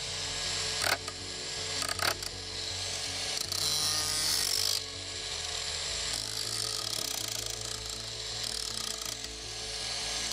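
Parkside Performance PWSAP 20-Li B2 20 V brushless cordless angle grinder running, its disc grinding against a knife blade; the grinding noise swells and drops with contact and is loudest around four seconds in. Two sharp clicks come about one and two seconds in.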